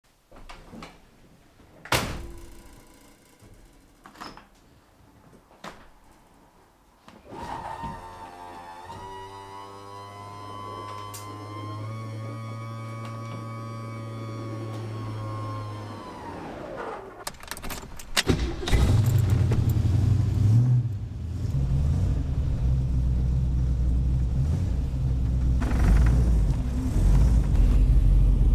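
A sharp thunk like a car door shutting comes near the start, with a few lighter knocks after it, then a steady held tone swells and fades away. About two-thirds of the way in, a classic car's engine starts and keeps running with a loud, low rumble.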